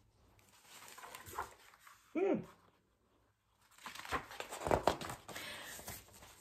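Paper pages of a picture book rustling and crinkling as the book is handled and a page turned, mostly in the last two seconds. A short vocal sound comes about two seconds in.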